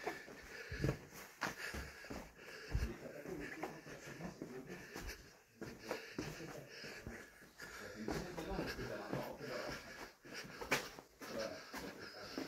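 Footsteps scuffing and crunching over a rubble and stone floor in an underground quarry gallery, with a person's heavy breathing and faint, low voices.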